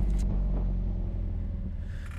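Alfa Romeo 4C's turbocharged four-cylinder engine running at low speed with the car moving slowly, a low steady engine sound that grows gradually quieter.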